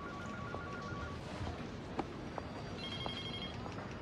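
Quiet office room tone with a faint electronic telephone trilling in the background: a short pulsing ring in the first second, then a higher-pitched one around the three-second mark. A light click about halfway through.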